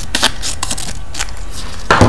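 Paper being handled on a craft table: a handful of short, dry scratches over a steady low hum.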